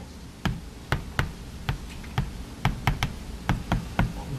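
Chalk tapping and clicking against a blackboard while writing: about a dozen short, sharp taps at an uneven pace.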